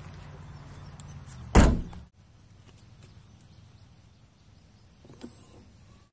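A car's rear liftgate is pulled down and slammed shut, giving one loud thud about a second and a half in, over a low steady hum.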